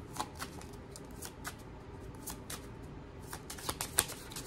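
Deck of oracle cards being shuffled by hand: scattered light clicks and slaps of cards, sparse at first and coming faster near the end.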